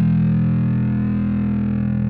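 Music: a distorted guitar chord held and ringing on, with the level steady.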